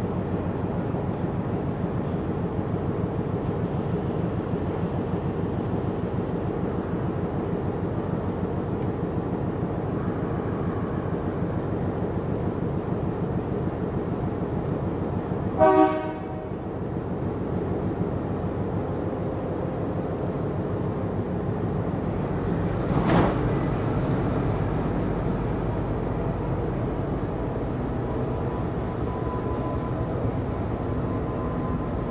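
CP 1557, an MLW MX620 diesel locomotive, its ALCO 251 V12 engine idling steadily. Just before the middle comes a short horn blast, and about seven seconds later a single sharp clank, after which the engine runs a little louder as the train starts to pull away.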